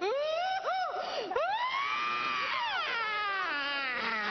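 A woman screaming and wailing in high cries that swoop up and down. A few short cries are followed by one long arching cry from about a second and a half in, then falling, wavering wails near the end.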